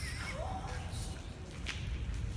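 A person's brief high, wavering voice sound at the start, its pitch sliding up and down, then dropping away within half a second, over a low rumble. One sharp click about three-quarters of the way through.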